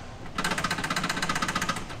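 A fast, even mechanical rattle running steadily from some machine, dipping briefly at the start.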